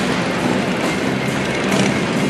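Freight train rolling past, a steady mixed noise of wagons on the rails, with music playing outdoors at the same time.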